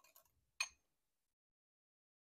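A single light clink of a metal kitchen utensil against cookware, a little over half a second in, then silence.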